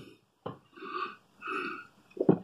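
A man burping twice with his mouth closed, each burp drawn out for under half a second, after swallowing fizzy lemonade.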